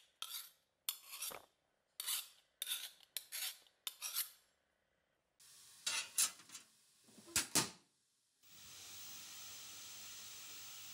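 Flat hand file rasping on a steel knife blade in short strokes, about two a second, stopping about four seconds in. After a pause come a few sharp metallic clacks, then a steady hiss sets in near the end.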